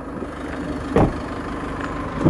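The Land Rover Freelander TD4's 2.2 diesel engine idling with a steady low hum. A single short thump comes about a second in.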